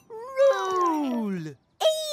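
A cartoon character's wordless voice: one drawn-out vocal sound that rises a little, then slides steadily down in pitch for about a second and a half. Another voice starts near the end.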